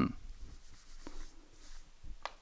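Quiet small room with faint rubbing and light handling noise and a soft click about a second in.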